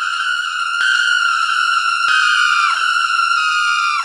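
A steady, high-pitched electronic tone with a stack of overtones, held without a break. Two faint clicks come early on, and a falling swoop slides down past the middle, with another at the end.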